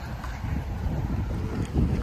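Wind buffeting the microphone: a low, uneven rumble with no clear pitch.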